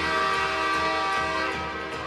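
Hockey arena goal horn sounding one long, steady blast after the overtime winning goal.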